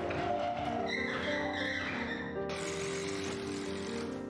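Solo piano music with sustained notes. A wavering high squeak sounds from about a second in, and a steady hiss joins from about halfway through.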